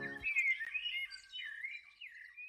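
Background music cuts off just after the start, leaving faint bird-like chirps: several short warbling calls that rise and fall in pitch.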